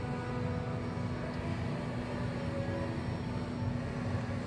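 Steady low machine hum with a constant drone, from the ecoATM kiosk as it evaluates a phone in its test compartment. Faint music plays under it.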